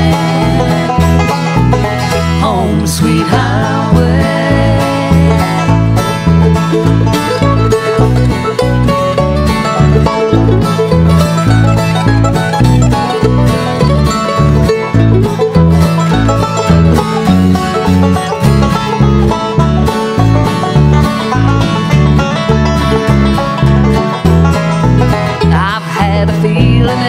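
A bluegrass band playing an instrumental break between verses, with banjo to the fore over guitar and a steady bass beat.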